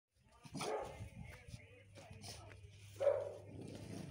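A chow chow puppy barking in short barks, the loudest about three seconds in, over a low steady hum.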